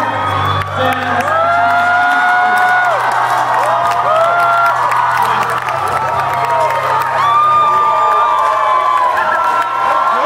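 A crowd cheering and whooping, with many long drawn-out shouts, over the low bass of a rap backing track that drops in level about two seconds in.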